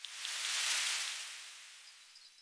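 Editing transition sound effect: a hissing whoosh that swells over under a second and then slowly fades.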